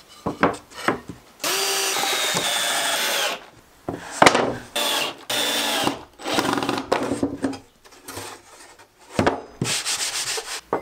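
Cordless drill-driver running in several short bursts, driving screws into a wooden drawer box, the longest burst about two seconds. Sharp wooden knocks and clatter come between the bursts as the pieces are handled.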